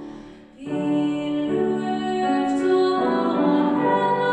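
A woman singing a hymn with grand piano accompaniment. The music dips into a brief pause between phrases about half a second in, then voice and piano come back in and carry on.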